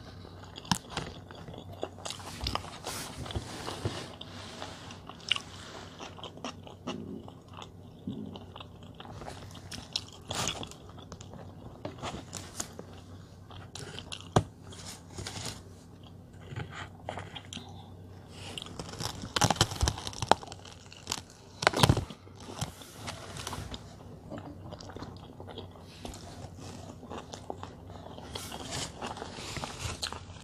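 A person chewing and biting into a thick burger, with many short wet clicks and crackles; the bites are loudest about 19 to 22 seconds in.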